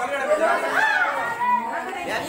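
Several voices talking at once in a large room: students chattering.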